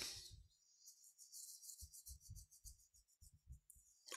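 Near silence: room tone, with a few faint low bumps in the second half.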